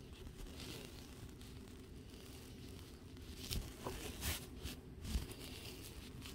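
Faint rustling and a few short, soft clicks and taps of things being handled, mostly in the second half, over a low steady hum.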